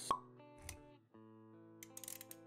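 Sound effects and music of an animated intro: a single sharp pop just after the start, a short soft low thump about half a second later, then music with held notes and a few quick ticks near the end.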